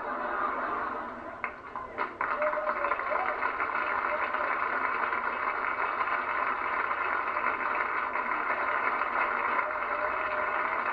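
Studio audience laughing and applauding in response to a joke, the noise swelling about two seconds in and holding steady.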